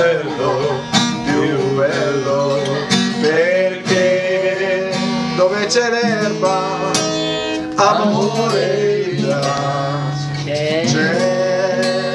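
Acoustic guitar strummed in chords, with two men singing along.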